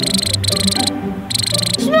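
A high, rapid chirping trill in three short bursts, over background music.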